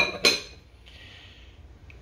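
Two light clinks of kitchenware close together, then a short soft hiss about a second in and a faint tick near the end.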